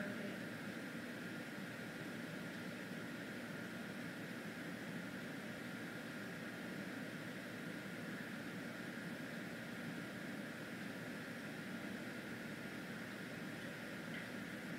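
Steady fan noise: an even hum and hiss that does not change.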